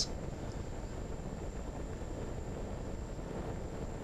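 Steady wind rush from the onboard camera of a fixed-wing RC plane in flight, with a faint high whine running throughout.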